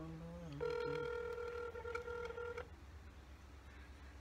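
Ringback tone of an outgoing phone call, heard through a smartphone's speaker. One steady ring about two seconds long starts about half a second in and then cuts off, as the call rings at the other end.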